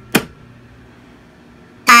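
A fire-alarm manual pull station is pulled with one sharp snap. Near the end a fire alarm horn starts, very loud, the first blast of a march-time code that pulses on and off about twice a second.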